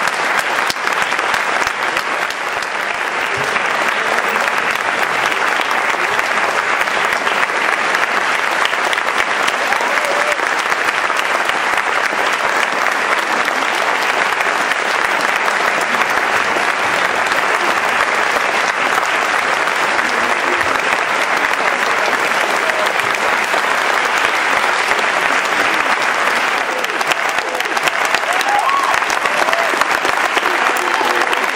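Large theatre audience applauding at a curtain call, a dense, steady clapping that runs on without a break, with a few voices calling out above it.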